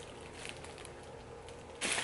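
Quiet room tone with a few faint rustles from a plastic bag of bread rolls being handled, and a louder rustle near the end.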